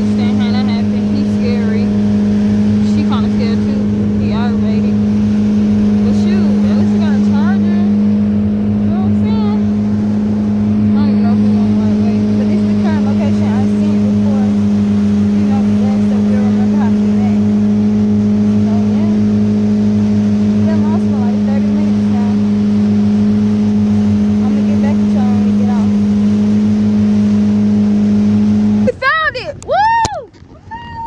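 Motorboat engine running at a steady cruising speed, a constant low drone, with faint voices over it. The drone breaks off abruptly about a second before the end.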